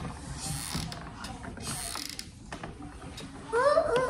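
Hot glue gun's trigger being squeezed, its feed mechanism creaking and clicking, amid light rustling of paper.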